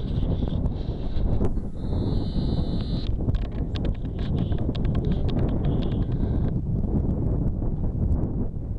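Wind buffeting the microphone, with scattered sharp clacks and knocks of loose rock blocks shifting and striking each other underfoot as hikers scramble over talus.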